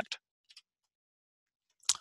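Near silence between stretches of a man's speech, with one faint short click about half a second in.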